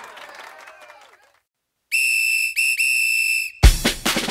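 A crowd's cheering fades out in the first second. After a short silence a police whistle blows three blasts, long, short and long, on one steady high pitch, and a drum beat starts near the end.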